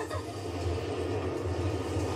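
Low, steady rumble in the soundtrack of an anime episode, playing quietly in the background.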